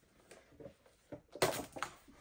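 A heart-shaped candy box being opened: after a quiet start, a short rustle and scrape about one and a half seconds in, then a few small clicks.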